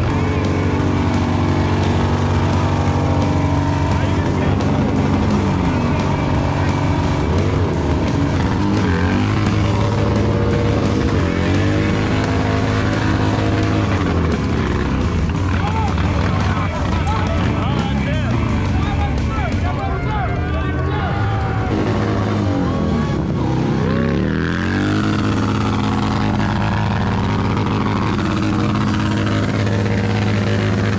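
A cruiser motorcycle revving hard during a tyre burnout, its engine pitch sweeping up and down again and again, under a loud music track.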